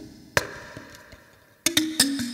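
Bamboo-tongued lamellophone with a wooden body, its tongues plucked in quick pitched notes. A single sharp knock with a brief ringing tone falls early, then a lull, and the plucking resumes near the end.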